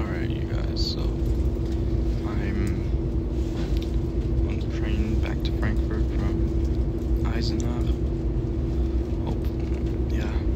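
Cabin noise of a moving ICE train: a steady low rumble with an even hum from the running train.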